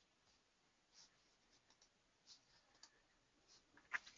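Near silence: room tone with a few faint, short clicks spaced about a second apart, the sharpest near the end, typical of a computer mouse being clicked.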